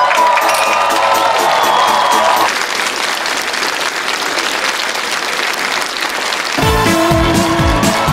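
Studio audience applauding and cheering, with music playing over the applause at first. About six and a half seconds in, a band strikes up an upbeat tune with a bass line.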